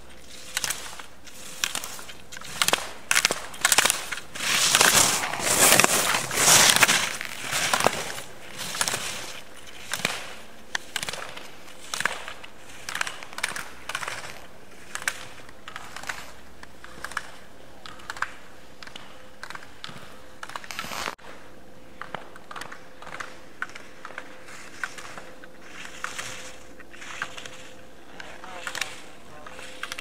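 Slalom skis scraping and chattering on firm snow through quick turns, with sharp clacks about once a second as the racer goes through the gates; loudest about four to eight seconds in, as the racer passes close by. A sudden break about three quarters of the way through, after which the turns and clacks go on.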